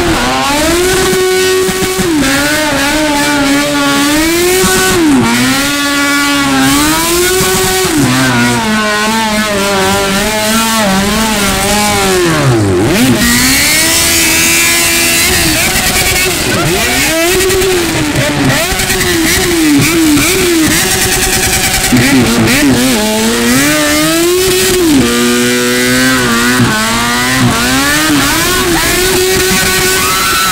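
A motorcycle engine revs hard through a burnout while the rear tyre spins in a cloud of smoke. The revs climb and hold at a steady top pitch for stretches, then dip and climb again over and over. About halfway through they drop low once before rising again.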